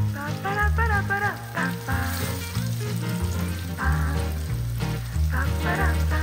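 Lentil patties sizzling as they shallow-fry in oil, under background music with a bass line and a wavering melody, which is the louder sound.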